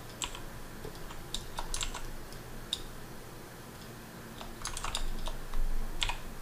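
Computer keyboard keys being pressed in short, scattered clicks, with a quicker run of presses about five seconds in.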